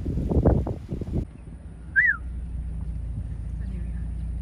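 Wind buffeting the microphone for about the first second, then the steady low hum of an idling car, with one short whistle-like chirp, rising then falling, about two seconds in.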